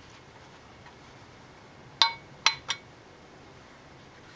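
Metal tool clinking against the engine's exposed valve train: three sharp metallic clicks about two seconds in, the first with a short ring.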